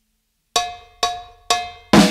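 Four evenly spaced percussion strikes, about two a second, each ringing briefly and dying away: a count-in, with the band coming in on the fourth.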